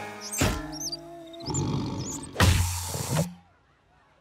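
Cartoon soundtrack: music with sound effects. A quick sweep comes about half a second in, and high squeaky whistling glides follow. A loud roaring burst with a deep rumble comes near three seconds, as the shark bulks up into a muscular form, and then the sound cuts off suddenly.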